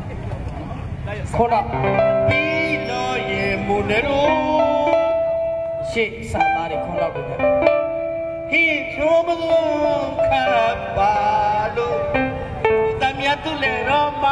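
Live stage music over a PA system: plucked-string instruments holding notes, with performers' voices singing and calling over them. There is a brief break about six seconds in.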